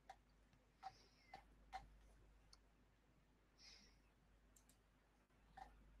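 Near silence, broken by a few faint, short clicks: four in the first two seconds and one near the end.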